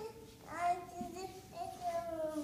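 A small child's high voice making drawn-out, sing-song sounds without words, starting about half a second in.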